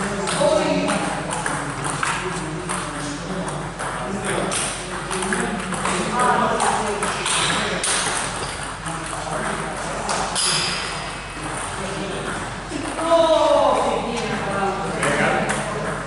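Table tennis ball in play: a quick run of sharp clicks as it is struck by the rackets and bounces on the table, with people's voices in the hall.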